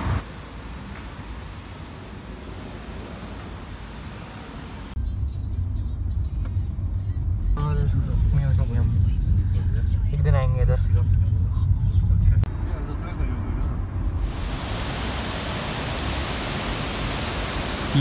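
Low road rumble of a moving car heard from inside the cabin, starting about five seconds in and running for about nine seconds, with a few short voice sounds over it. Before it there is quieter street traffic ambience, and near the end a steady rushing hiss takes over.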